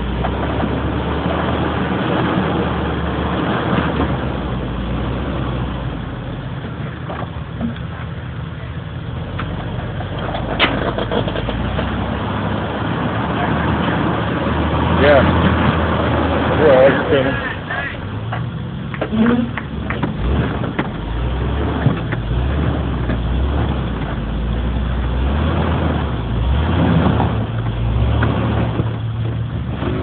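Off-road 4x4's engine running low and slow as the truck crawls over rocks on big mud-terrain tyres, with occasional knocks from the rocks and chassis.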